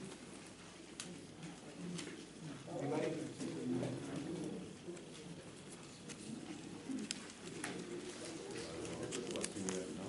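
Low, indistinct murmur of voices in a meeting room, with scattered small ticks and taps of paper and pens as people mark paper ballots.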